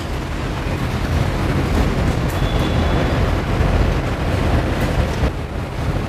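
Steady background noise, a low rumble with an even hiss over it, with a few faint clicks.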